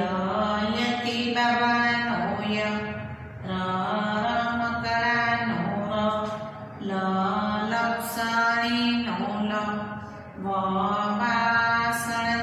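A woman's voice chanting in a slow sing-song, holding each syllable, in about six phrases with short pauses between them. It is the rote recitation of Gujarati letters that a teacher leads, row by row off the board.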